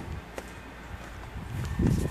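Above-ground pool's electric cartridge filter pump, just switched on, running with a steady low hum, with a few soft thumps near the end.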